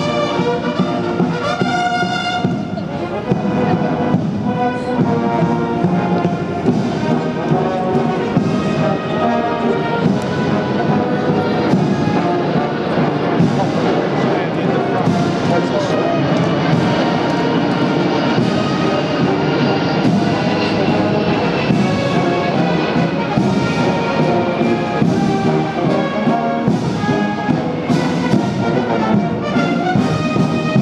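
Military band of bugles and brass (bugles, tenor horns, euphoniums) playing a march while marching, with drum beats under it.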